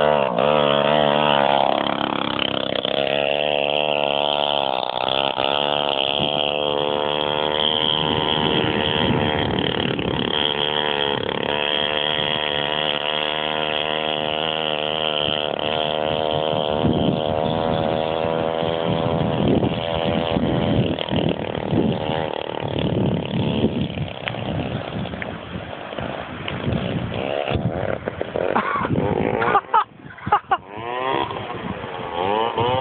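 Small engine of a motorized scooter running and revving, its pitch rising and falling. It grows fainter and more broken up after about 18 seconds.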